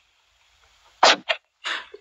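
A person's sudden, loud, breathy burst about a second in, followed quickly by a shorter one and then a fainter breathy one.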